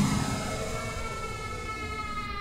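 Electronic dance music in a breakdown: a held, siren-like synth tone with several overtones, drifting slowly down in pitch and fading away.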